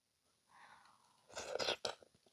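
Close-miked bite into a juicy piece of melon, with wet, slurpy chewing noise in a short cluster a little over a second in.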